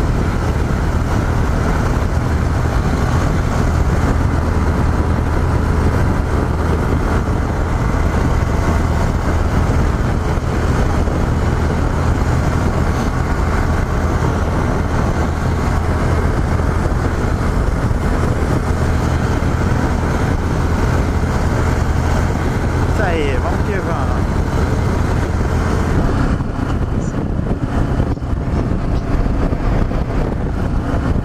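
Yamaha XT 660Z Ténéré's 660 cc single-cylinder engine cruising at highway speed under steady wind and road noise. About 26 seconds in, the steady engine note drops away as the bike slows.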